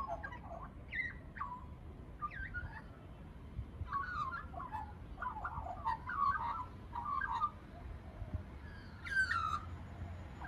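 Juvenile Australian magpie warbling: clusters of short notes sliding up and down in pitch, separated by brief pauses, with a louder downward-sliding note near the end.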